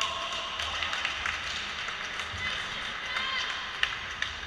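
Badminton players' shouts and shoes squeaking and scuffing on the court, then sharp racket strikes on the shuttlecock near the end, a few tenths of a second apart.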